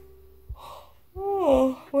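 A woman yawning behind her hand: a breathy intake, then a voiced sound that glides down in pitch for about half a second.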